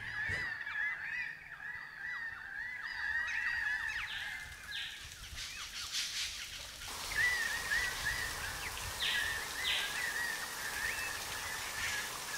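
A dense chorus of short, high wild animal calls repeating and overlapping over a soft outdoor hiss. The background changes about seven seconds in.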